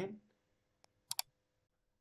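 Clicks at a computer: a faint click, then two sharp clicks in quick succession a little past a second in.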